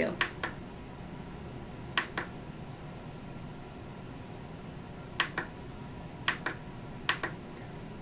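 Button on the top control panel of a Singing Machine SML625BTBK karaoke machine clicking as it is pressed, five double clicks a second or more apart, cycling the unit's source modes toward Bluetooth. A faint steady hum runs underneath.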